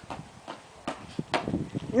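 A small child's sneakers slapping on a concrete patio while hopping, a few separate footfalls about two a second.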